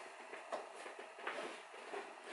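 Faint rustling and a couple of light clicks as a massager cord is pulled out from under a gaming chair's seat.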